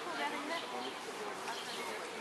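Indistinct chatter of people nearby, with no clear words, over a steady outdoor background hiss.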